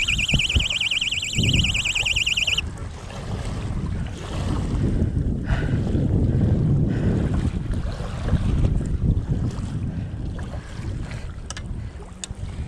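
Wind buffeting the microphone over choppy lake water lapping at the shore, as a dense low rumble. A high warbling electronic alarm tone sounds over it at the start and cuts off suddenly about two and a half seconds in.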